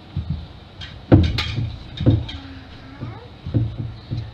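Bread dough being kneaded by hand in a glazed clay kneading bowl while butter is worked into it: three dull thumps as the dough is pressed and folded against the bowl, the loudest about a second in.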